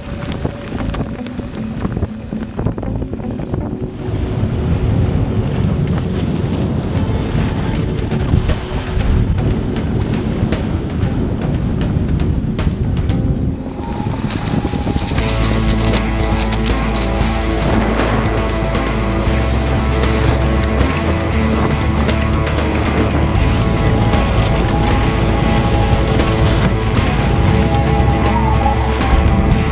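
Wind noise on the microphone and rushing, splashing water from a catamaran sailing fast through chop, under background music. About halfway through, the music becomes loud, with heavy bass, and dominates.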